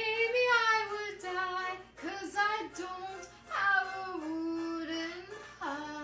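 A woman singing solo, holding long notes that bend and glide between pitches, with short breaths between phrases.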